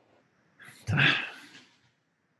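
A man's breathy sigh while he thinks: an intake of breath, then a short voiced exhale lasting about half a second, with no words.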